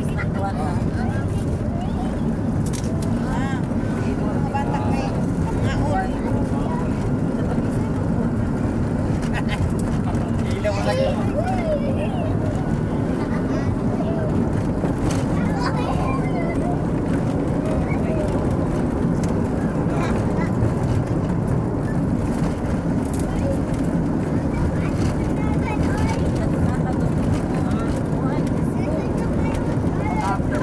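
Steady low rumble of a vehicle's engine and road noise, heard from inside the cabin while it drives along.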